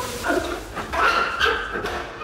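Water thrown from a bucket splashes over a man, who cries out in about five short, pitched yelps and gasps, loudest around a second in.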